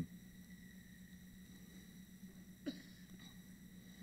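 Near silence: a faint, steady electrical hum of room tone, with one short spoken word near the end.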